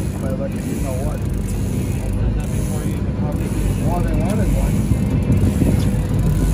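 Fishing reel being cranked steadily, a fast run of small mechanical clicks, as a hooked fish is reeled in toward the boat, with a steady low rumble underneath.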